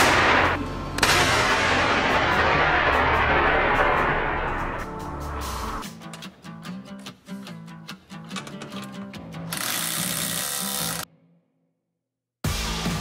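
Two sudden bangs, one at the start and one about a second in, each followed by a loud rushing hiss that dies away over about four seconds: an airbag deploying, over background music. Near the end a short hiss is followed by the music cutting out to silence.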